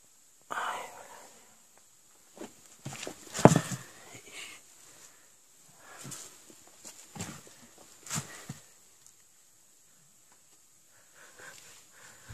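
Rummaging through debris on a dugout floor: irregular rustles, scrapes and knocks of objects being handled and moved, the loudest a sharp knock about three and a half seconds in.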